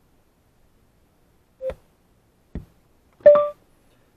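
Two short clicks from pressing and holding the Aukey Bluetooth receiver's control knob, then, near the end, a short beep: the prompt tone that opens a voice command.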